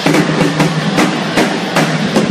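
Live black metal band playing an instrumental passage: the drum kit strikes about two to three times a second over a sustained, steady guitar tone.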